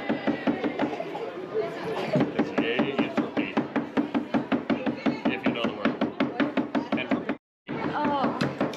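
A steady, rapid knocking, about five even strokes a second, with people talking in the background; the sound cuts out completely for a moment near the end.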